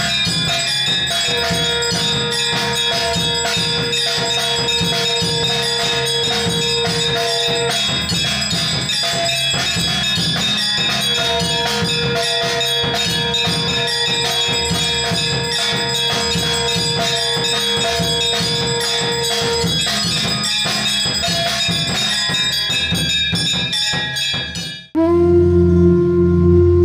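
Temple aarti bells ringing in a fast, unbroken clangour with rattling percussion, over which a long steady note is held twice, for about six and about eight seconds. Near the end it cuts off suddenly and a soft sustained music begins.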